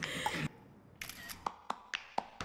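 A short hiss, a brief quiet gap, then a series of sharp clicks about four or five a second.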